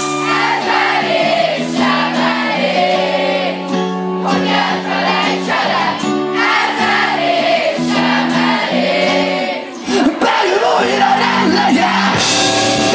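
Live rock band in a quiet breakdown: electric guitars hold long, ringing chords without drums while many voices from the audience sing along. The singing dips briefly near the end before the full band comes back in.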